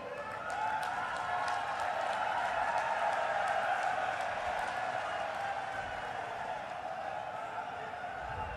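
Large crowd cheering and clapping, swelling over the first few seconds and then slowly dying down.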